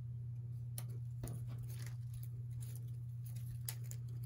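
Soft, scattered clicks and rustles of small paper pieces being handled and placed on a card, over a steady low hum.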